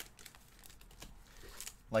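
Baseball cards being flipped through by hand: faint, scattered ticks and rustles of card stock sliding against card.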